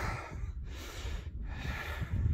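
A man breathing close to the microphone: three noisy breaths in a row, over a low rumble of wind on the microphone.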